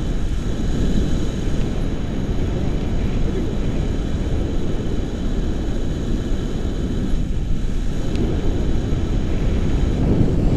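Wind on the microphone of a camera carried by a paraglider in flight: a loud, steady, low rumble of rushing air.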